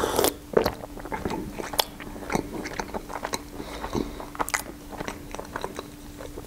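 A sip from a mug at the start, then close-miked crisp crunching and chewing of a wafer tube filled with boiled-condensed-milk cream, with sharp crackles as the wafer is bitten and broken.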